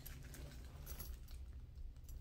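Faint handling noise from hands holding and turning a faux leather handbag: a few light taps and rustles.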